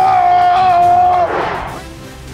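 A man yelling a long, drawn-out "let's gooo", holding one loud pitch for over a second before his voice falls away.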